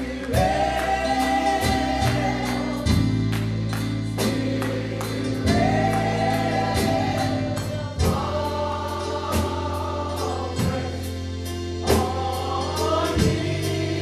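Live gospel music: several voices singing together in long held phrases that slide in pitch, over keyboard and a drum kit keeping a steady beat.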